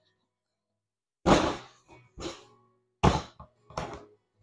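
Three loud, sharp thunks and a lighter fourth, about a second apart and starting about a second in: the hard plastic base of a golf cart seat being knocked and set down on a mat as it is handled.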